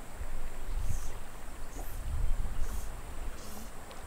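Outdoor ambience: a low, uneven rumble of wind on the microphone, with a high, faint insect chirp repeating about once a second.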